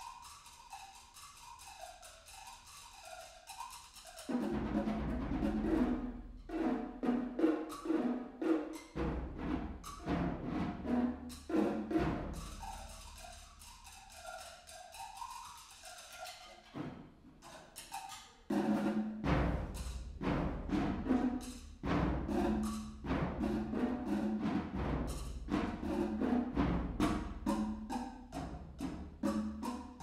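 Live percussion duet on congas and other drums. A quiet pitched tone wavers up and down, then dense, fast drumming comes in about four seconds in. It thins back to the wavering tone in the middle and returns louder about eighteen seconds in.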